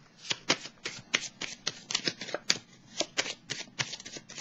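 Tarot cards being shuffled by hand: a run of crisp card slaps and flicks, several a second.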